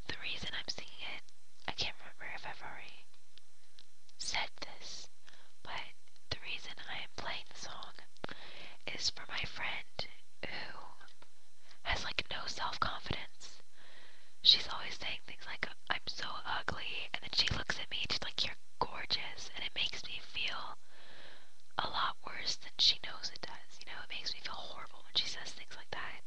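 A person whispering in short phrases with brief pauses between them, with a short sharp click about halfway through.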